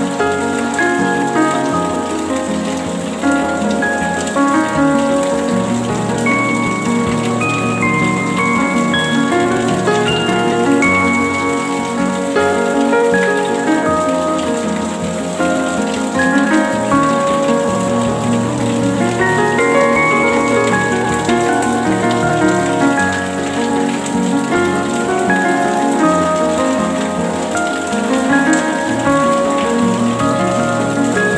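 Steady rain mixed with gentle instrumental music: a stream of short ringing notes at changing pitches over the continuous patter of the rain.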